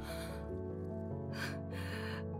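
Soft background music with held chords, and two breathy gasps from a voice actor, one at the start and a longer one in the second half, the choked breathing of someone on the verge of tears.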